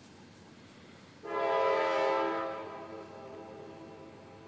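A horn sounds once: a steady, chord-like blast that starts suddenly about a second in, is loudest for about a second, then fades away over the next second and a half.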